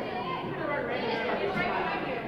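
Many people talking at once, a general chatter of overlapping voices with no single speaker standing out, carrying in a large hall.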